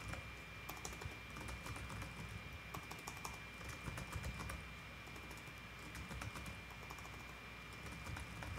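Faint typing on a computer keyboard: quick, uneven runs of keystrokes as lines of text are typed out.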